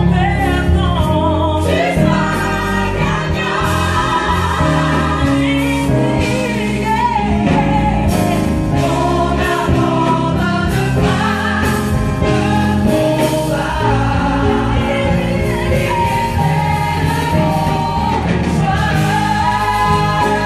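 Gospel choir of women's and men's voices singing into microphones over amplified instrumental accompaniment with a steady low bass line, continuous throughout.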